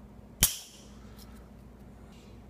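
Spring-loaded desoldering pump (solder sucker) firing: one sharp snap a little under half a second in, with a brief ringing tail, as the plunger springs back to suck molten solder off the joint.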